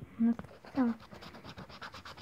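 Premia 777 scratch-off lottery ticket having its coating scraped off with a small hand-held tool in quick, repeated short scratches.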